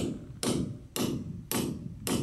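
Hammer blows on the end of a stainless-steel wedge-anchor stud, driving it deeper into its drilled hole. Four sharp metallic strikes, about half a second apart, each with a brief ring.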